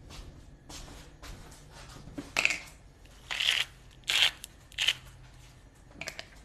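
Four short dry rustling scrapes spread over about two and a half seconds, from hands handling ingredients and their containers while a pinch of salt and sugar is measured out, over a low room hum.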